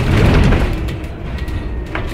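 City bus interior noise while driving, heard close to the rear doors: a loud surge of noise with low rumble in the first half second, easing to steadier running noise with a faint whine near the end.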